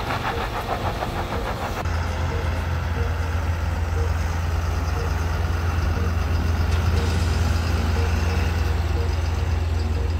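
Snowplough truck's diesel engine running with a steady deep rumble, which starts about two seconds in after a cut from a lighter, pulsing vehicle sound.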